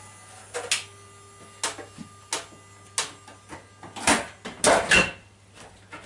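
Irregular clicks and knocks from a Golden Dragon fruit machine being handled, about nine in all, the loudest two near the end, over a steady low electrical hum.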